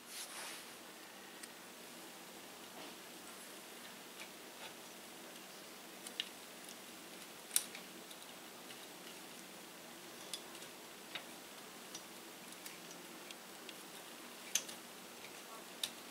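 Faint, scattered small clicks from plastic zip ties and a printer belt being handled at a 3D printer's X carriage, over quiet room tone.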